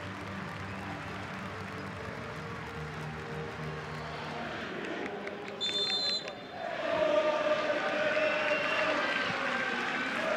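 Stadium crowd noise with music over the PA. A referee's whistle blows once, briefly, a little past halfway to start the match, and then the crowd gets louder and its supporters sing.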